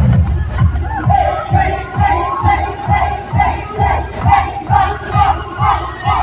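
Dance music starts up suddenly and plays loud with a steady beat of about two strokes a second, while a party crowd shouts and calls out over it.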